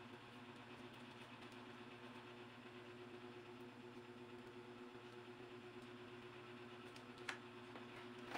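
Near silence: a faint steady room hum, with a single short click near the end.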